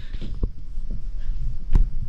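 Low rumble with a few soft knocks, typical of handling noise from a handheld camera being moved about.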